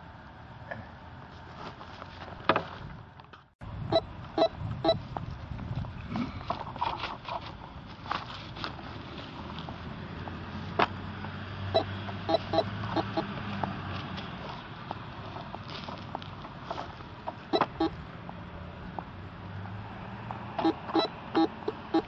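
Radio Shack metal detector giving short, sharp beeps as its search coil sweeps over mulch, with the beeps coming in quick clusters near the end as it homes in on a buried target.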